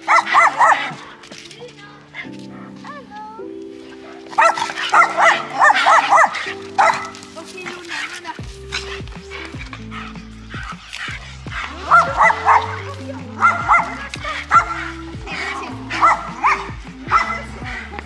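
Excited dogs barking and yipping in repeated short bursts during rough play, over background music whose bass line comes in about halfway through.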